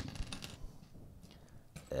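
Loose plastic LEGO pieces clicking and rattling against each other and the desk as a hand rummages through a pile of them, mostly in the first half second.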